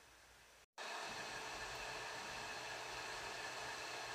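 Faint steady hiss of background room noise, starting under a second in after a moment of dead silence.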